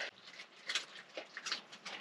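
A few faint, scattered clicks and light taps, the small handling noises of someone reaching for an upper cabinet's latch in a camper van.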